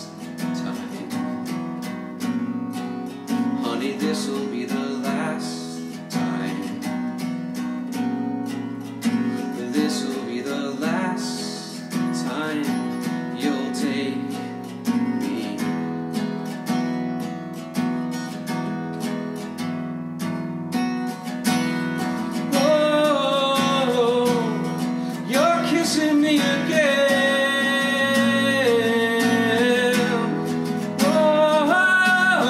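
Acoustic guitar with a capo, strummed steadily in chords. In the last third a man's voice comes in over the strumming, singing long held notes.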